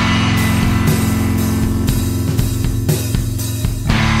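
Rock band recording in an instrumental stretch of the song: electric guitar and drum kit playing on with a steady beat.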